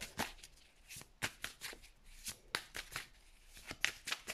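A deck of tarot cards being shuffled by hand: a string of short, soft, irregular card snaps, a few each second.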